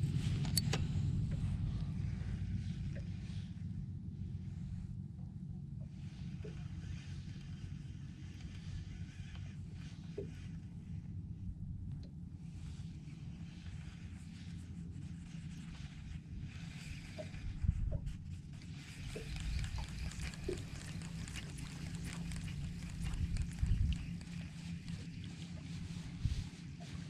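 Wind rumbling on the microphone, steady and low, with a couple of stronger gusts in the second half and faint scattered ticks.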